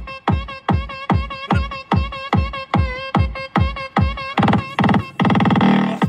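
Loud electronic dance music from a Fiat Uno's trunk sound system. A steady kick drum hits about two and a half times a second under a repeating high synth line, and a long held bass note comes in near the end.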